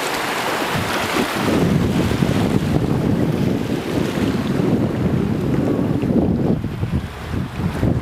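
Small waves washing over shallow water along a sandy beach, with wind buffeting the microphone in a loud, uneven low rumble from about a second and a half in.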